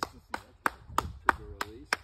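A run of about eight sharp cracks, roughly three or four a second and unevenly spaced.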